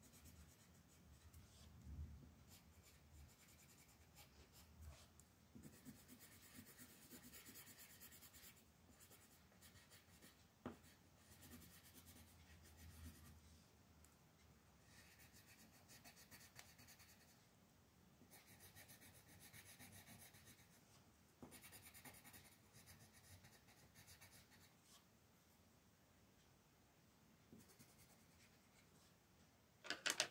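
A colored pencil shading on coloring-book paper: faint, scratchy strokes in spells of a few seconds with short pauses between, and a single sharp tick about ten seconds in.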